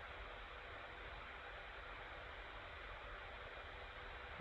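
Faint steady hiss of the recording's background noise (room tone), with no other distinct sound.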